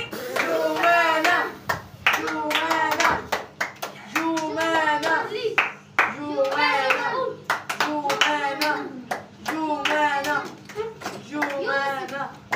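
A group of children clapping in rhythm and chanting together in short, repeated phrases, one about every two seconds.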